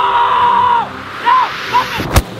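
A person's long, held scream, then two short yelps, over a steady rushing noise, as the rider is pulled along on an inflatable fly tube.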